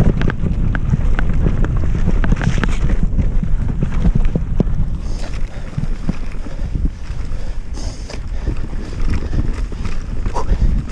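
Wind buffeting the microphone of a mountain bike riding fast down a rough forest singletrack, with the bike's rattle and frequent short clicks and knocks from the tyres and frame going over roots and stones.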